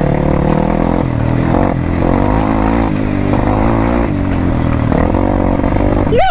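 Dirt bike engine running under changing throttle, its pitch rising and falling several times as the bike descends a rough track.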